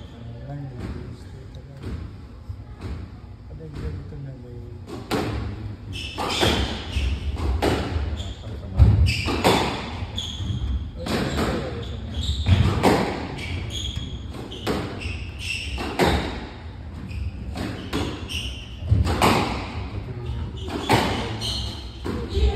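A squash rally on a glass court: the ball struck by rackets and hitting the walls in a string of irregular sharp knocks, with the room's echo after each. The hits come sparser and quieter at first and grow denser and louder from about five seconds in.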